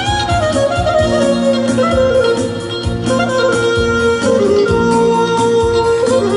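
Clarinet playing a folk-style melody that slides downward over the first two seconds and then holds long notes, over a steady beat from a live band.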